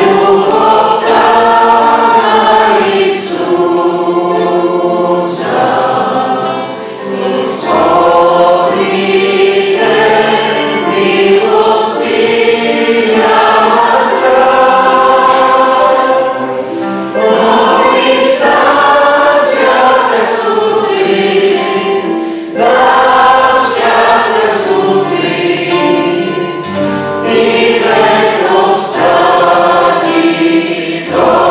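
Congregation singing a hymn together, accompanied by a nylon-string classical guitar, phrase by phrase with brief breaks between lines.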